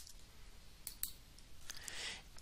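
Faint computer mouse clicks, two close together about a second in and a fainter one later, over low room hiss.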